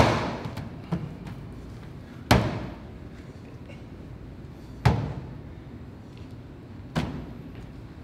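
Hand-pulled noodle dough slapped down hard on a stainless steel counter as it is swung, stretched and twisted. There are four heavy slaps about two to two and a half seconds apart and a lighter one about a second in, each followed by a brief echo.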